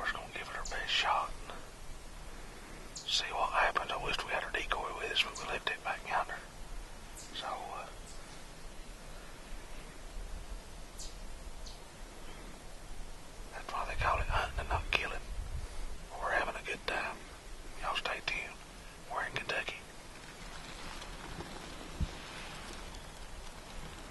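A man whispering in short phrases, with pauses between them.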